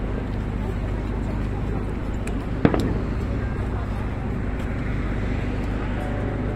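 A single sharp firework bang about two and a half seconds in, over a steady murmur of background noise with a low hum.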